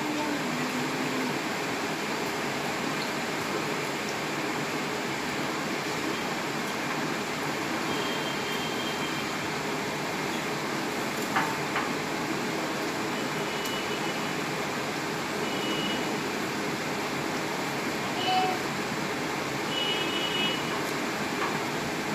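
Steady background hiss of room noise, even throughout, with a few faint short high tones and a single click about halfway through.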